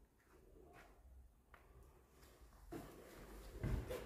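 Mostly near silence, with a few faint knocks and low thumps that grow a little louder near the end.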